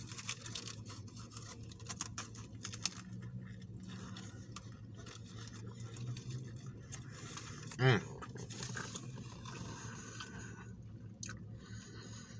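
A person chewing a mouthful of grilled chicken sandwich, with crinkling of the foil sandwich wrapper in the first few seconds and a short, pleased 'mm' about eight seconds in.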